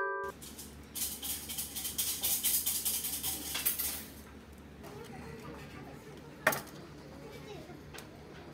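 Bamboo fortune sticks rattled together in their cup: a brisk shaking of many light clattering strokes for about three seconds, then one sharp knock a couple of seconds later. It opens on the tail of a glockenspiel jingle.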